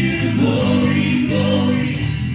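Live worship band playing a gospel song: guitars with several voices singing together.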